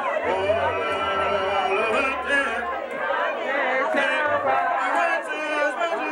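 A church congregation singing a hymn a cappella, many voices together with no instruments, led by a man singing into a microphone.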